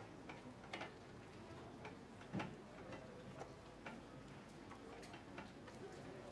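Quiet room with faint, soft ticks about twice a second, and one louder knock about two and a half seconds in.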